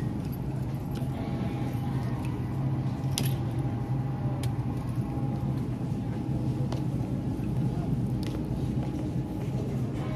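Steady low hum of supermarket refrigerated display cases, with a bunch of keys on a coiled key ring clinking a few times as it is carried.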